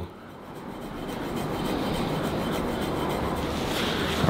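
Metal RockBlade scraping tool drawn along the skin of a forearm in instrument-assisted soft-tissue work, a steady rasping rub that builds over the first second and then holds.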